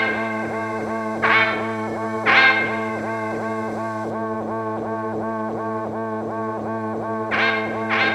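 Instrumental passage of a song: a guitar played through distortion and effects, holding a steady low drone under a quick repeated figure of about four notes a second. Louder accented strums come about a second and two seconds in, and again near the end.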